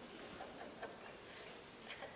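Faint room tone during a pause, with a few soft ticks about a second apart.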